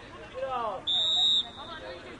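Referee's whistle: one short, steady blast of about half a second, the loudest sound here. A voice calls out just before it.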